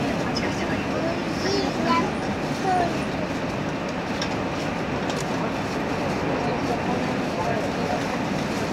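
Running noise of a 789-series electric express train heard from inside the passenger car: a steady rumble of the train moving along the track at speed. Indistinct voices murmur over it, a little louder about two seconds in.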